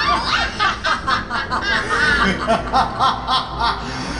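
Villainous witch cackling: a fast run of 'ha-ha' laughs, about four a second.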